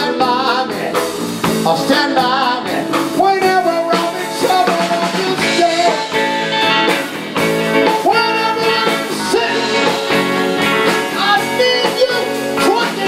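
Live blues band playing: electric guitars and drum kit under a wavering, bending lead line.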